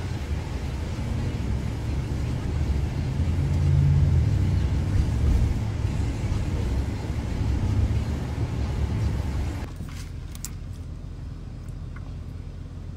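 Low, steady rumble of a car heard from inside the cabin. It stops abruptly near the end, leaving quieter room sound with a few faint clicks.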